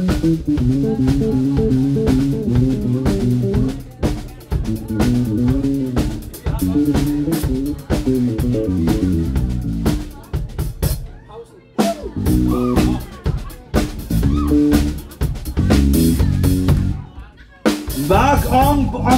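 Live band playing with a Yamaha drum kit, electric bass and guitar, the drums keeping a steady beat under a moving bass line. About ten seconds in, the band thins to a few sparse hits, then comes back in full about two seconds later.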